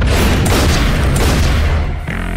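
Loud trailer sound design: heavy booming hits and a deep rumble over a dense wash of noise, mixed with music.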